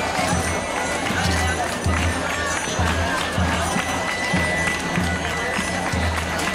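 Walking procession music: a deep drum beating roughly once a second under a thin, high held pipe note, with crowd chatter and hand-clapping mixed in.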